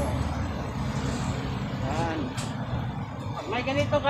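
Steady low rumble of road traffic passing close by, with brief snatches of voices.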